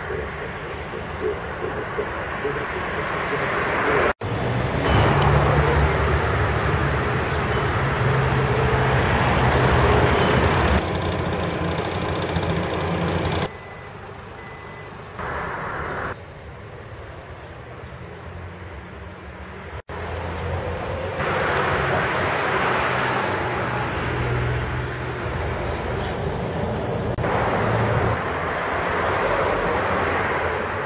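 Outdoor background noise with a low, steady rumble like road traffic. It cuts out abruptly twice and shifts in level between shots.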